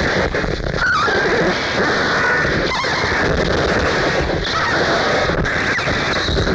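Harsh industrial noise: a loud, dense wall of distorted noise, with a brief squealing glide about a second in.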